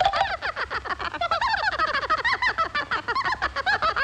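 Cartoon animal voice: a rapid, unbroken string of short, high calls, each rising and falling in pitch.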